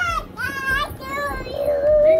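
A small girl singing in a high voice: short sung phrases, then a longer held note near the end.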